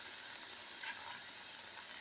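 Crêpe batter sizzling steadily in a hot cast-iron skillet, a faint even hiss.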